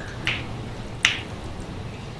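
A pause over low steady room hum, with one sharp click about a second in and a soft short hiss just before it.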